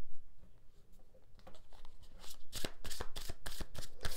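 Tarot deck being shuffled by hand: a rapid run of card flicks and riffles that starts about a second and a half in and grows denser and louder.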